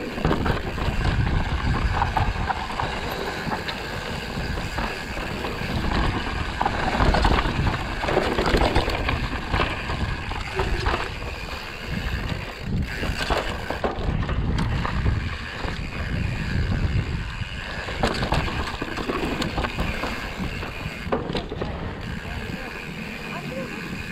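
Mountain bike riding down a rocky dirt trail: tyres rolling over stone and earth with continual rattles and knocks from the bike, and wind buffeting the microphone.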